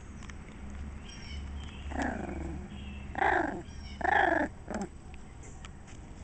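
A dog giving a short series of pitched, whining yelps: a fainter one about two seconds in, two louder ones about a second apart, then a brief one near the end.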